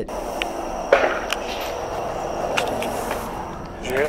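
A single sharp bang about a second in, taken for a gunshot, with a few fainter clicks over a steady rustling noise.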